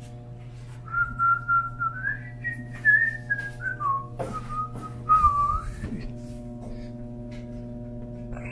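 A person whistling a short wandering tune for about five seconds, over a steady electrical hum inside an elevator car. A couple of soft knocks come near the end of the tune.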